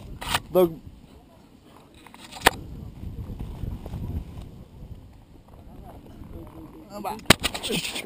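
Faint rustle and wind noise on a body-worn camera while a rope jumper hangs on the rope, with a sharp knock about two and a half seconds in. Near the end comes handling noise with a loud knock as a hand grips the rope.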